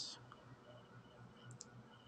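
Near silence: room tone, with a few faint small clicks, one early and a couple about a second and a half in.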